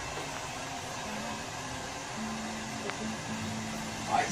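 A steady rushing noise, like blowing air, with a faint low hum that comes in and out from about halfway through.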